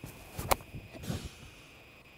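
A golf club striking a ball off the grass: one sharp crack about half a second in, followed by a few softer scuffs.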